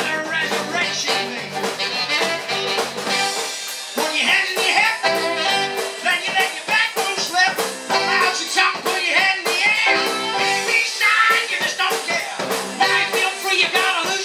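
A live rock and roll band playing: saxophone, electric guitar, keyboards and drums, with a steady beat. The deepest bass thins out about three seconds in.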